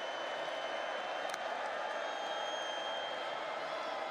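Steady crowd noise from a football stadium, an even mass of many voices, with a thin high tone held through most of it.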